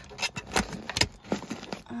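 A zippered pouch of small items being pushed into a car's center console compartment, with a run of small clicks and rattles as it is handled.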